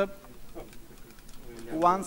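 A pause in speech: quiet room tone for most of the moment, then a voice starts speaking again near the end, its pitch rising as it begins.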